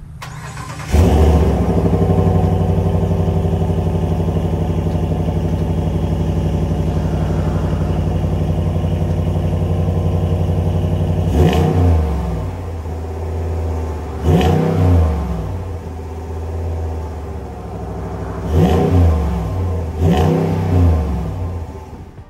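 Ram 1500's 5.7-litre Hemi V8 with eTorque on its stock exhaust, heard at the tailpipes: it starts about a second in with a flare of revs, settles to a steady idle, then is revved four times, each rev rising and dropping back to idle.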